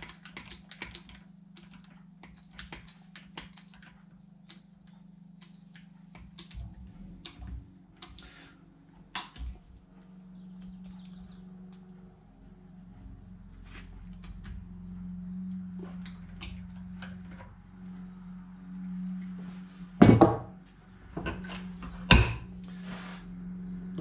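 Hand crimping tool being worked on a 50 mm² crimp lug and heavy battery cable, making a run of light clicks as the handles are squeezed, then two loud knocks near the end. The crimp closes only a little.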